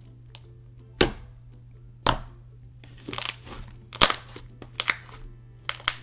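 Thick glue-based slime being pressed and folded by hand, giving a series of sharp clicks and air-bubble pops about once a second, some in quick clusters, over quiet background music.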